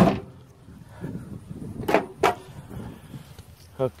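Diamond-plate metal battery tray pushed shut by foot, closing with a loud metallic bang, followed about two seconds later by two short sharp knocks in quick succession.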